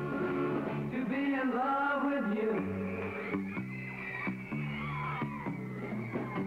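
A mid-1960s pop-rock trio playing a song on electric guitar, bass guitar and drum kit, with sung vocals over a steady beat.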